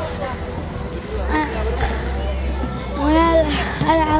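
Basketballs bouncing on an indoor court while children play, with the boy's high child voice heard over it, echoing in a large sports hall.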